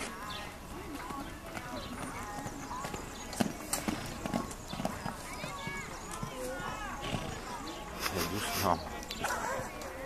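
Pony cantering on a sand arena, its dull hoofbeats sounding with sharp knocks now and then, the loudest cluster near the end, over people talking in the background.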